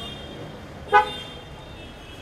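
A single short car horn toot about a second in, over a steady hum of street and crowd noise.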